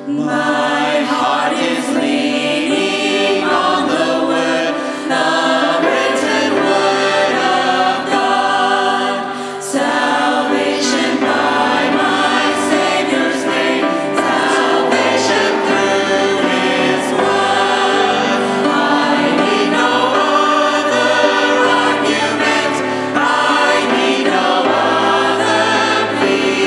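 A vocal group singing a hymn in harmony with grand piano accompaniment. The voices come in right at the start after a brief piano passage.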